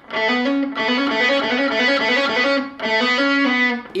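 Distorted electric guitar playing a fast run of notes in sextuplets, in three short repeated phrases with brief breaks between them.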